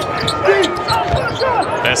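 Basketball court sounds: a ball dribbled on a hardwood floor with low thuds, and short sneaker squeaks as players move. Voices call out on the court.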